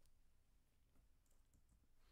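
Near silence: faint room tone with one or two faint clicks.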